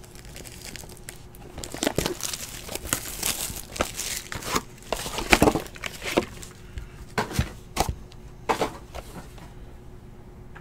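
Plastic wrapping on trading card packaging being torn open and crinkled by hand: an uneven run of crackles and rustles, loudest about halfway through, dying away near the end.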